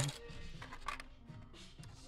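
Faint background music.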